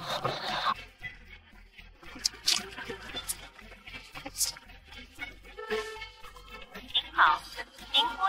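Soft background music from the drama's score, with the end of a spoken line at the start and a short vocal sound, like a gasp or whimper, about seven seconds in.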